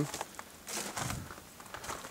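Faint rustling and scuffing, as of someone moving about while holding a camera, with a slightly louder scuff about a second in.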